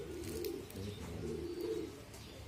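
A dove cooing in low, repeated phrases.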